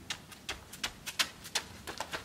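Footsteps of a person jogging up a paved path in soccer boots, a quick string of light clicks about four or five a second.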